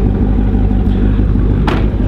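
Chevrolet Corvette C6 Z06's 7.0-litre LS7 V8 idling steadily.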